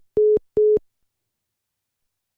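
Telephone call-dropped tone: the tail of one short beep and two more of the same steady mid-pitched tone, evenly spaced and over within the first second, then dead silence on the line. It is the sign that the phone call has disconnected.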